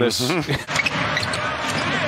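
Basketball game sound in an arena: a steady crowd noise with a basketball bouncing on the hardwood court, starting about half a second in.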